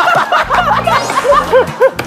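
Laughter, a quick run of repeated 'ha' sounds about four a second, over background music.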